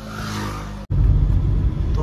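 Volkswagen car heard from inside the cabin. A quieter steady engine hum with a hiss breaks off abruptly about a second in, and is followed by a louder, steady low rumble of engine and road noise as the car drives.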